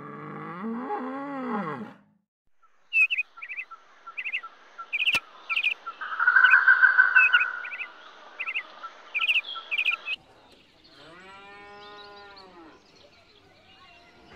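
An American bison bellows with a low, wavering grunt for about two seconds. Birds then chirp in short quick bursts, a few a second, with a louder steady whistle in the middle. Near the end a cow gives one long moo.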